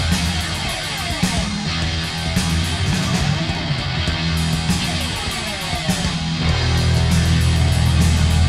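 Punk rock from a vinyl record: loud distorted guitars, bass and drums. About six and a half seconds in, the low end settles into a heavier, steadier note.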